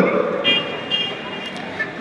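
Two short high-pitched toots of a vehicle horn, about half a second in and again at about one second, over steady background noise.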